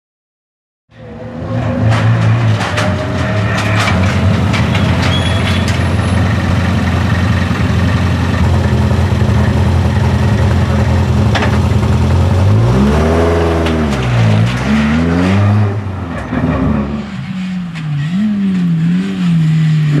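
Škoda Fabia rally car's engine idling steadily after about a second of silence, then revved up and back down twice. From about 17 s the engine pitch rises and falls as the car drives through the gears.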